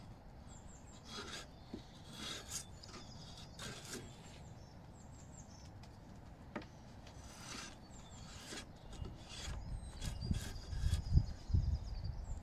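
A drawknife shaving a bark-covered branch clamped in a shave horse: separate scraping strokes, unevenly spaced, as each pull peels off a shaving. A low rumble rises near the end.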